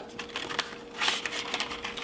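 Packaging handling: the clear plastic tray holding the SSD crackles and rustles against the cardboard box as it is slid out, in a run of small clicks with a louder crinkle about a second in.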